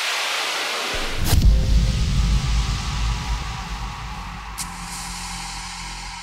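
Logo-intro sound effect: a hissing whoosh, then about a second in a deep boom with a sharp hit on top, its low rumble slowly dying away, with a short tick near the middle.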